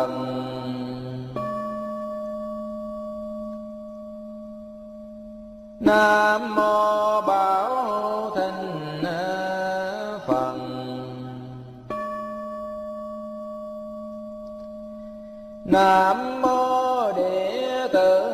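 A man chanting Buddha names in Vietnamese in a slow melodic recitation. Each name ends on a long low note and is followed by a steady ringing bell tone that fades over about four seconds; this happens twice.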